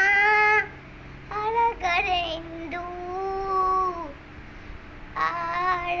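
A young girl singing a Kannada children's song, drawing out long held notes over several phrases with short breaths between them.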